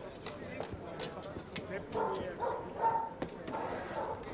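Indistinct voice sounds about two seconds in, over scattered sharp clicks and knocks.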